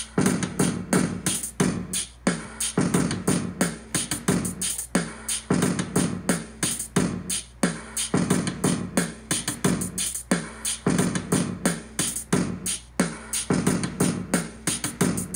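Hip-hop drum beat from an Akai MPC Live's stock drum kits, a quick, even run of hits over a sustained low note.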